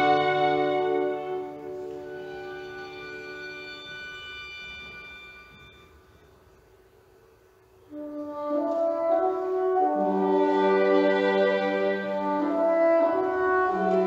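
Chamber ensemble of two violins, horn, bassoon and piano playing a slow hymn arrangement: a held chord fades almost to silence. About eight seconds in, the bassoon and piano begin a soft stepwise melody, with quiet held notes from the violins and horn underneath.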